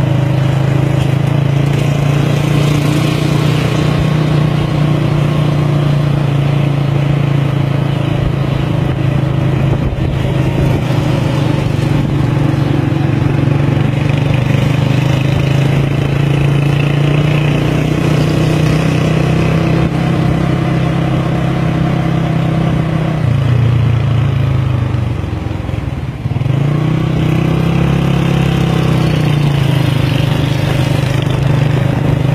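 Motor scooter engine running steadily with an even hum. About 23 seconds in its pitch drops and it quietens briefly, then it revs back up a few seconds later.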